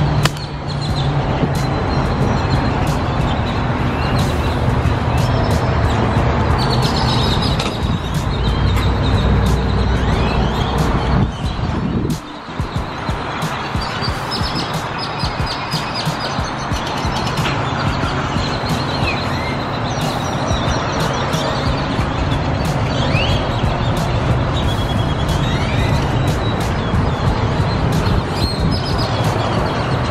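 A large flock of birds on power lines, many calling and chattering at once in a dense, continuous din, with background music underneath.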